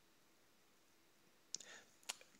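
Near silence: room tone, with a brief faint click near the end.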